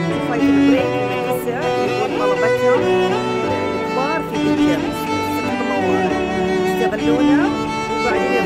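Music played on bowed strings, a violin-led string ensemble with cello beneath, with long held notes and slides between them.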